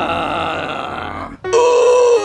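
A man's voice holds one long, drawn-out zombie groan, which fades and breaks off about a second and a half in. Just before the end, music starts with a bright, steady note.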